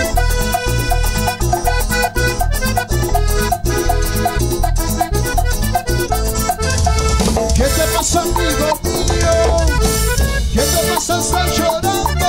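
Live guaracha band playing an instrumental passage: a steady dance beat on drums and bass under a melody line.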